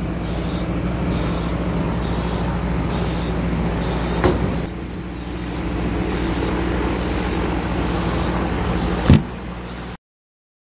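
A 50 W CO2 laser engraving machine running: a steady low machine hum with a high hiss that pulses on and off in a regular rhythm as the laser head works back and forth engraving. There is a short knock near the middle and a louder one near the end.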